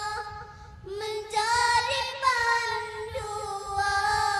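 A group of young girls singing a nasheed in unison, with held, sustained notes. The voices dip briefly about half a second in and come back in together about a second in.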